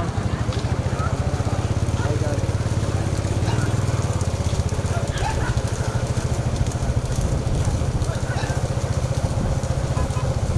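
A motorcycle engine running steadily close by, with occasional shouts from people around the racing bullock carts.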